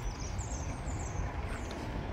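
Outdoor background noise: a steady low rumble, with a faint high wavering chirp from about a third of a second to a second in.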